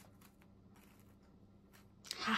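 Faint, scattered crackles of a crisp, dry baked meringue crust (walnut meringue topping on a mazurek) pressed by fingertips, the sign that the topping has dried out hard and brittle.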